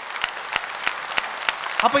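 Audience applause, many hands clapping in a steady dense patter, with a man's voice over a microphone starting again near the end.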